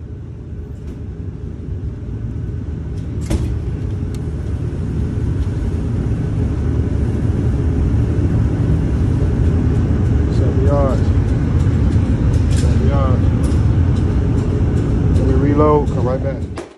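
Indoor range's electric target carrier running as it sends the paper target back downrange: a steady low motor hum that grows louder over the first several seconds, then holds, with a few faint clicks.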